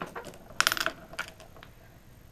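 A hinged metal cabin portlight being opened by hand: its wing-nut dogs are loosened and the glass frame swung open. This gives a quick run of small metallic clicks and rattles a little after half a second in, with a few single clicks around it.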